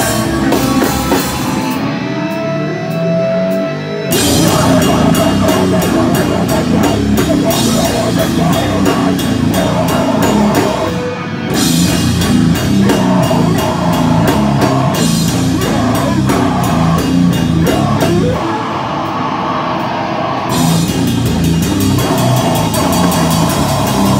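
Hardcore punk band playing live: distorted electric guitars, bass and a drum kit with cymbals, loud and driving. The drums drop out twice, about two seconds in for a couple of seconds with a held guitar note, and again near the end, with a brief break in the middle.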